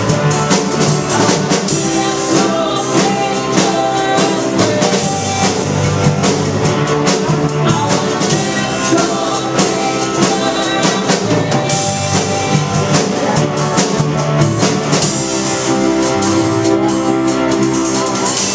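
A live band plays a worship song on drum kit, guitars and keyboard, with singing.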